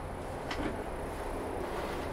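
Steady low hum of an electric fan running, with one faint tick about half a second in.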